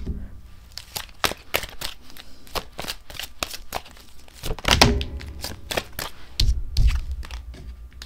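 Tarot cards being shuffled and handled by hand: a quick run of crisp card snaps and flicks, with two heavier thumps about five and seven seconds in as the cards knock against the table.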